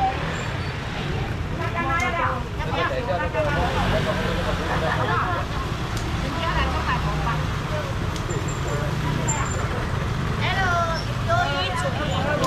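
Indistinct voices of people talking at a market stall over a steady low rumble of traffic noise.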